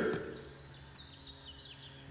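Quiet room with a steady low hum and a run of faint, high chirps, typical of a small bird, from about half a second in to near the end; the end of a man's word fades out at the very start.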